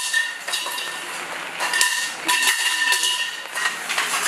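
Aluminium folding cots being unfolded and set up: metal frames and legs clanking and clicking into place, with short metallic rings.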